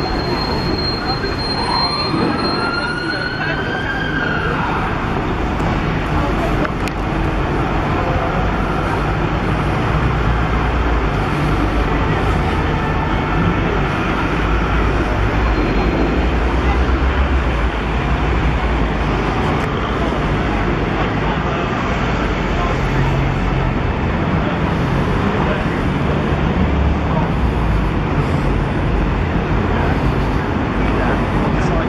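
City street ambience: road traffic running steadily past, with a low rumble, and the voices of passers-by on the pavement. About a second in, a single tone rises and then falls over a few seconds.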